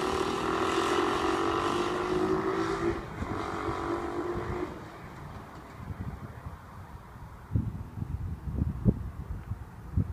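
A go-kart engine running at high revs for about five seconds, its pitch easing down slightly, with a short break near three seconds, then fading away. After that only wind buffeting on the microphone is heard, with low thumps in the last few seconds.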